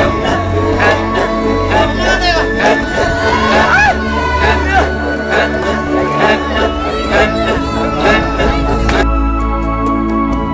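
Maasai men singing and chanting for their dance, with high wavering calls over the group, mixed with sustained music tones. About nine seconds in the voices stop and only soft, calm instrumental music remains.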